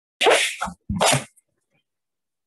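Two loud, short bursts of a person's breath and voice close to the microphone, each about half a second long, in quick succession, like a sneeze or cough.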